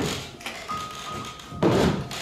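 Soft background music with held notes, and two thuds: one at the start and a louder one near the end. The thuds come from performers seated on chairs rowing with long poles on a stage.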